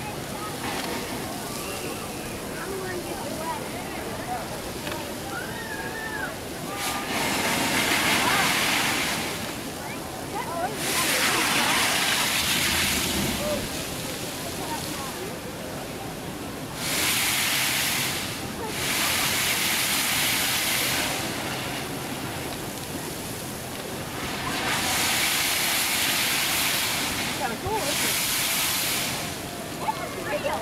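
A man-made geyser's water jet spouting from a rock formation. It makes a steady rushing hiss that swells into louder surges of spray several times, each lasting a few seconds.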